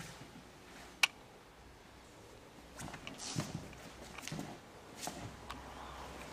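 Quiet movement of aikido practitioners on a tatami mat: soft knee and foot thuds and cloth rustle, with one sharp click about a second in.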